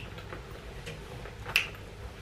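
Handbags and their straps being handled, with one sharp click about one and a half seconds in and a few faint ticks in between.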